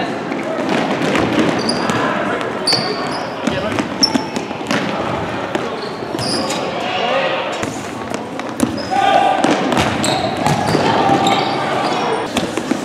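Futsal game play on a wooden gym floor: voices shouting and echoing around the hall, sneakers squeaking, and the ball knocking off feet and the floor.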